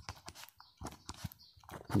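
Faint, scattered taps and light scratches of a stylus writing on a tablet screen.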